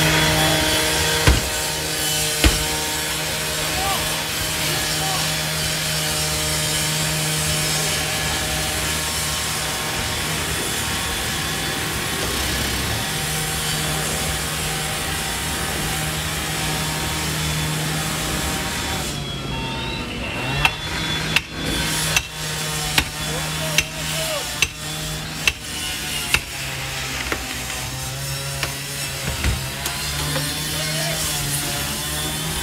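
Gas-powered chainsaw running at full throttle while cutting through a roof, the cut that opens a ventilation hole over the fire. The saw eases off briefly about two-thirds of the way in, then keeps running under a series of sharp knocks, roughly one a second.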